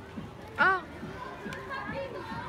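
Children's voices as they play and chatter close by, with one loud, high-pitched shout about half a second in.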